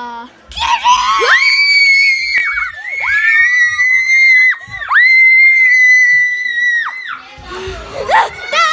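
Girls screaming: three long, high-pitched screams one after another, with short breaks between them.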